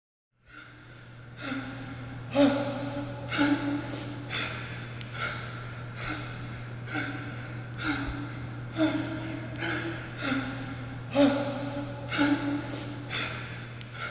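A man breathing hard in repeated loud gasps and sighs, roughly one a second, starting about half a second in, over a steady low hum.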